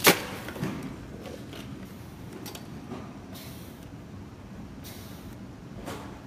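A sharp click right at the start, then a ReVel portable ventilator cycling rapid breaths into a test lung, with faint hisses of air at intervals over a low steady background.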